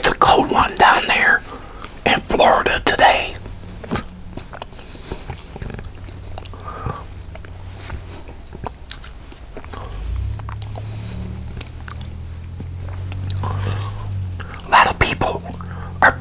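Close-miked mouth sounds of eating tortellini and sausage soup: two loud slurps from the bowl in the first three seconds, then chewing with small wet clicks. A low steady hum lasts about four seconds in the second half, and a few more loud slurping sounds come just before the end.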